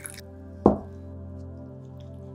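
Water pouring from a glass jug into a stainless steel pot stops just after the start, then a single drop plops into the pot about two-thirds of a second in, over steady background music.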